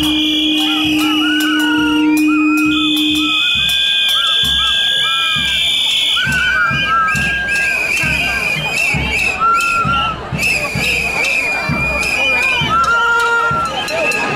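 Many whistles blown by a marching crowd in long, overlapping blasts, with a lower horn-like tone held for the first few seconds. Steady low thuds come about twice a second beneath the crowd noise.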